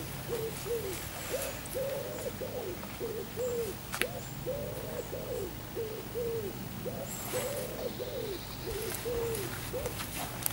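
A dove cooing over and over in short phrases of two or three soft, low coos, with one sharp click about four seconds in.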